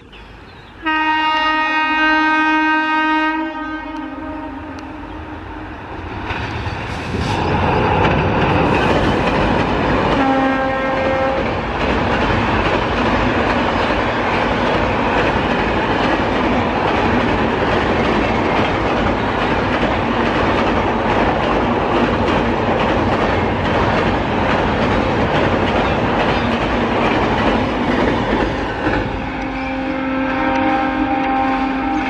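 Train horn sounding a long two-tone blast about a second in, a short blast around ten seconds in and another starting near the end, while a passenger train of LHB coaches crosses the steel girder bridge at high speed with a loud, steady rumble and clatter of wheels on rails for most of the time.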